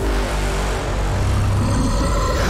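Cinematic trailer score and sound design: a sudden loud hit, then a dense, sustained rumbling wall of sound.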